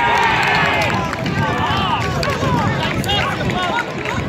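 Several people shouting and cheering at once just after a goal is scored in a football match, with a loud burst of overlapping voices at the start that carries on as scattered shouts.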